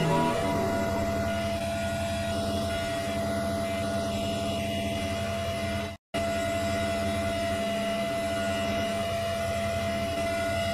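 A steady electronic drone of several held tones, cutting out for an instant about six seconds in.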